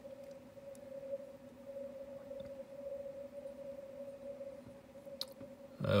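Receiver audio from a Yaesu FTdx5000MP on the 17 m CW band, set to a 100 Hz-wide filter with the audio peak filter and digital noise reduction on: a steady mid-pitched tone that wavers in strength, with no Morse keying heard.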